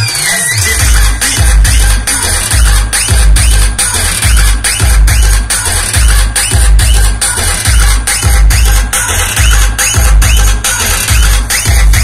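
Electronic dance music played very loud through a large outdoor DJ sound system, with a heavy bass that pulses in a steady rhythm under sharp, regular drum hits.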